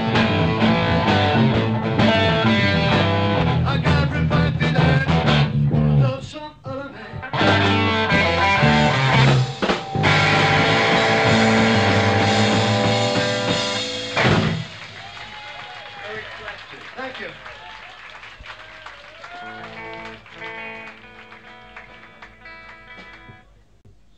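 Live electric blues-rock trio of electric guitar, bass and drums playing the close of a song. The band drops out briefly about six seconds in, comes back, and holds a final chord that stops sharply about fourteen seconds in. After that come low voices and a few stray guitar notes.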